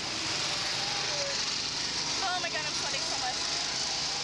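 Steady rushing air noise on the ride-mounted microphone as the Slingshot catapult ride's capsule swings, with a few short vocal sounds from the riders in the middle.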